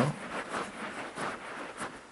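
Hand screwdriver driving a screw through a rack-mount bracket into a metal equipment chassis, turned loosely by hand: faint scraping with a few light clicks.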